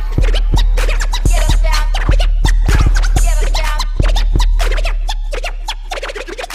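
Miami electro bass dance track with deep, booming sub-bass notes under a fast drum-machine beat, overlaid with wiggling record-scratch sounds.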